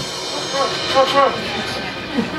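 A short pause between songs of a live rock band: the music has stopped, and a few brief voice calls ring out over a low murmur.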